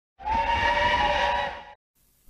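Steam locomotive whistle blown once for about a second and a half: a steady chord of several notes over a hiss, trailing off at the end.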